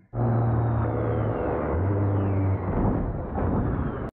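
Low, dark rumble with a deep held drone note that steps down to a lower note about halfway through: the ominous underscore of a horror TV show.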